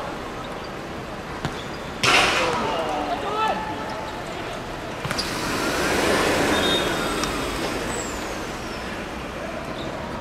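Traffic noise: a sudden loud hiss about two seconds in, then a vehicle sound that swells and fades over a few seconds, with brief shouts in between.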